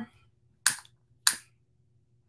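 Long-reach piezo utility lighter clicked twice, about two-thirds of a second apart, to light a tea light. Both are short, sharp clicks.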